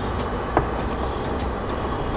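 Steady street noise with a low rumble, like road traffic, under background music, with a single click about half a second in.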